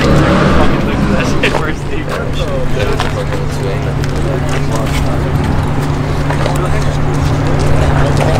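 A car engine idling steadily under the chatter of a crowd of people talking.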